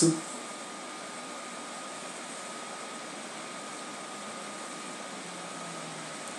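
Steady background hiss of room tone, with a faint constant high-pitched whine running through it.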